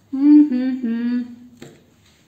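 A woman humming with her mouth closed while chewing, three held notes stepping down in pitch over about a second and a half.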